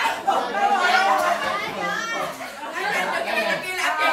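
Chatter of a group of people talking over one another, several voices overlapping.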